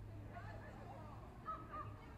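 Faint murmur of an outdoor crowd talking in the background, with two short high-pitched sounds about one and a half seconds in.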